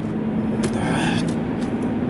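Road and engine noise inside the cabin of a moving car: a steady rumble with a low, even hum.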